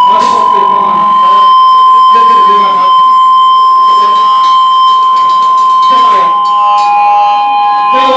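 Electric guitar feedback through the amplifier: a loud, steady high whine held throughout, with a second, slightly lower feedback tone coming in about six seconds in. Shouting voices sound under it.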